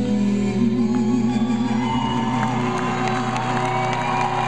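A live band holds a sustained final note with a wavering vibrato as the song ends, and audience whoops and whistles join in from about two seconds in.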